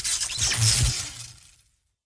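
Logo-animation sound effect: a crash like shattering glass over a low boom, dying away within about a second and a half.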